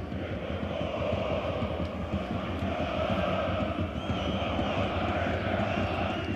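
Football stadium crowd: a steady din of fans, with chanting that swells and fades.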